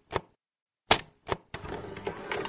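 Old film-projector sound effect: a few separate sharp clicks, then faint rapid ticking and hiss starting about a second and a half in.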